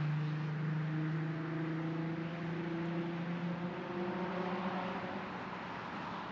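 Road traffic: a motor vehicle's engine droning steadily with a slight rise in pitch midway, over a steady hiss of tyre and road noise.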